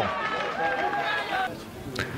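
Raised voices of players shouting on an outdoor football pitch, fading about one and a half seconds in.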